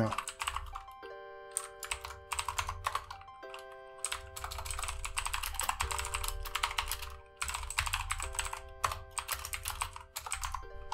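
Typing on a computer keyboard, runs of quick keystrokes with short pauses, over quiet background music of held chords that change every couple of seconds.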